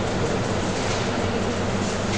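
Steady background noise, an even hiss over a faint low hum, with no distinct events.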